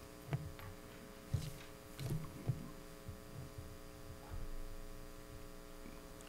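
Steady electrical mains hum in the meeting's microphone and sound system, with a few faint low thuds and rustles.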